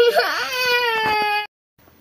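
A small child crying: one long, high, wavering wail that cuts off suddenly about a second and a half in.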